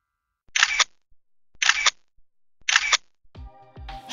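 Three short, noisy sound-effect hits, evenly spaced about a second apart, then background music coming in near the end.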